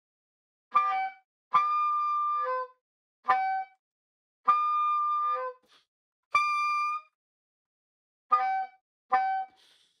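Soprano saxophone playing overtones on the fingered low C sharp: seven short notes with pauses between them, some jumping from one partial to another mid-note. A little past halfway comes the highest, thinnest note, as he reaches for the top of the series.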